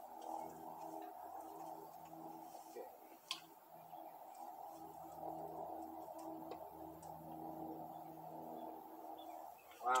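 A sharp click about three seconds in from handling a Sig Sauer MPX ASP CO2 air rifle as it is charged with a 12-gram CO2 cartridge; there is no hiss of leaking gas. A steady hum of several tones runs underneath throughout.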